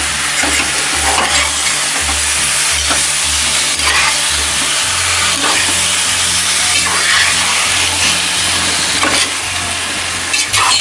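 Mutton pieces sizzling in hot oil in a pan, stirred with a spatula that scrapes across the pan every second or two.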